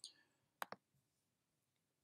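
Two quick computer mouse clicks about a tenth of a second apart, in near silence.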